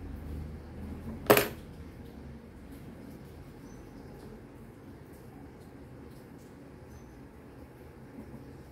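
A single sharp plastic clack about a second in, as a hot glue gun is set down on the table. Faint handling sounds follow while the glued fabric is pressed in place.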